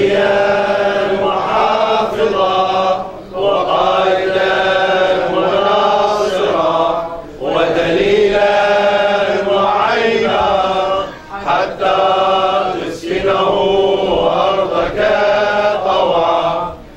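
A man's voice chanting an Arabic supplication in long melodic phrases, each a few seconds long, with brief breaks for breath between them.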